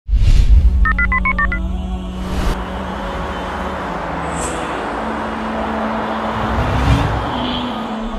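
Title music for a TV show, opening with a heavy low hit, then a steady drone with swelling whooshes. About a second in, a quick run of about seven telephone keypad tones beeps.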